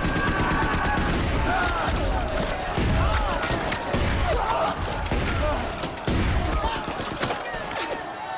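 War-film battle soundtrack of a First World War trench fight: dense, rapid rifle and machine-gun fire with soldiers shouting and repeated heavy low thumps of explosions.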